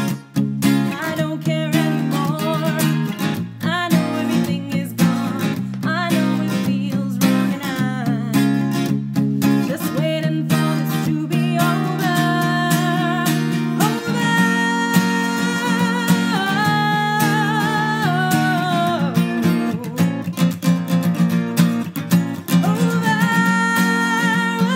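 Acoustic guitar strummed, home-recorded on a single microphone, with no lyrics sung. In the second half long held melody notes sit over the strumming.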